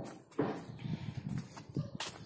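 Soft, irregular knocks and rustling from footsteps and a hand-held camera being moved.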